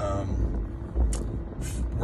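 Steady low rumble inside a car cabin, with a brief vocal sound at the start and a single click about a second in.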